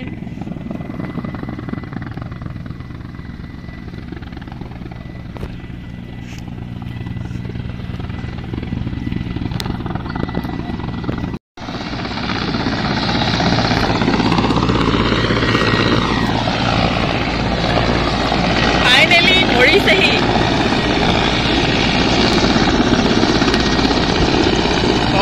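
Helicopter rotor and engine drone from a helicopter hovering low and descending. After a break about halfway the drone is louder, and its pitch sweeps up and back down as the helicopter moves.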